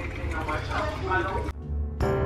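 Hot water poured from a gooseneck kettle into a stainless steel mesh pour-over coffee filter, a steady splashing hiss, with faint voices under it. It cuts off suddenly near the end as music begins.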